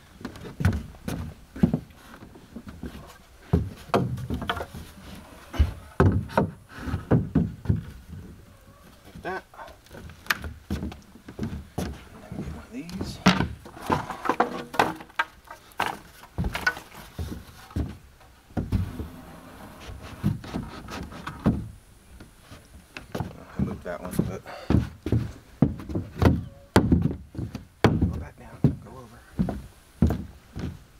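Irregular wooden knocks, clacks and thuds as pine 2x4 boards are set down and shifted on a plywood deck, with footsteps on the plywood.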